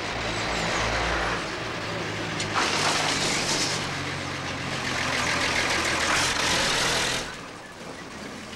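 Loud engine noise of a passing craft, likened to a hovercraft: a steady low engine hum under a rushing noise that swells twice and cuts off about seven seconds in.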